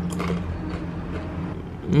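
A person chewing a rolled, crispy spicy tortilla chip (Takis), a few faint crunches near the start and about a second in, over a steady low hum.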